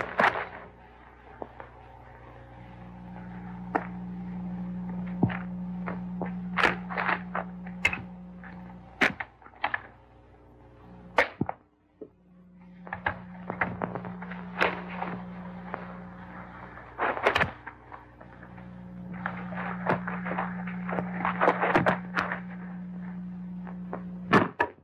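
Sharp knocks and cracks at irregular intervals over noise that swells and fades in waves, with a steady low hum that drops out a few times.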